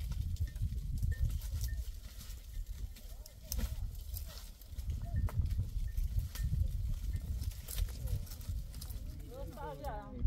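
A herd of goats moving over stony ground, with irregular sharp clicks of hooves on rocks and a few faint calls, over a steady low rumble.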